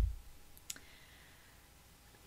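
Faint room hiss in a pause, broken by a single short, sharp click about two-thirds of a second in.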